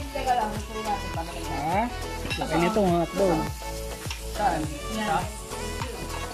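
Meat and seafood sizzling on a tabletop electric grill pan, heard under background music.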